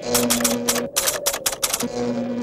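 Typewriter sound effect: a fast run of keystroke clicks, about seven a second, as an on-screen caption is typed out letter by letter, stopping near the end. A steady low tone runs underneath.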